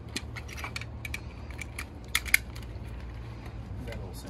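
Small clicks and rattles of strap hardware as a lower strap of a Pedi-Mate child restraint is looped around the stretcher frame and fastened, with two sharper clicks a little past two seconds in. A steady low hum runs underneath.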